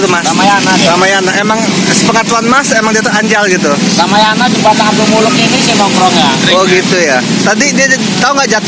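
A man speaking throughout, with road traffic running steadily behind him.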